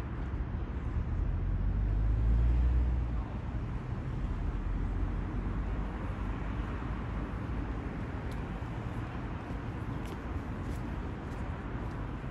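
Outdoor city ambience: a steady wash of traffic noise, with a heavier low rumble in the first three seconds that cuts off suddenly.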